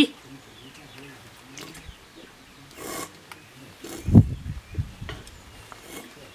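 A person drinking beer straight from a can: a brief rustle, then a short run of low gulps about four seconds in.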